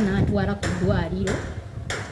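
A woman's voice talking, with a sharp knock near the end.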